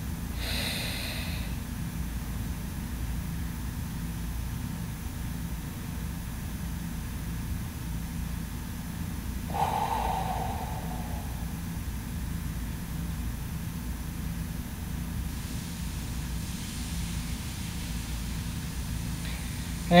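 A man holding his breath over a steady low background hum, then letting it out about ten seconds in with one short exhale.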